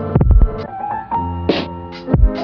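Lo-fi hip-hop beat: drum hits over sustained chords, with a short rising tone about a second in.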